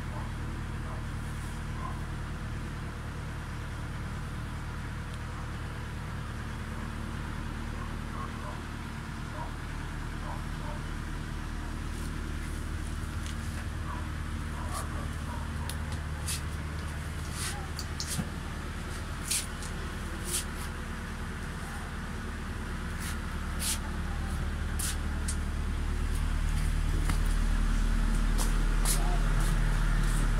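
A steady low motor-like hum, with a scatter of sharp clicks in the second half. Near the end a louder rumbling comes in as the phone is handled and rubs against clothing.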